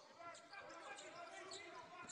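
Faint court sounds of a basketball game: a basketball bouncing on the hardwood as it is dribbled, with muffled voices in the hall.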